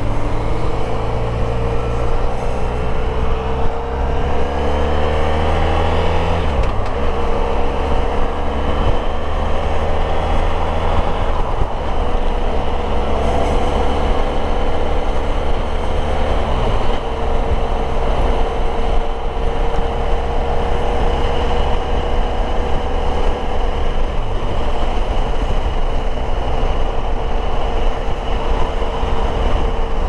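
Honda VFR1200X Crosstourer's V4 engine accelerating through the gears: the engine note climbs in pitch, drops at each of four gear changes, then settles to a steadier note.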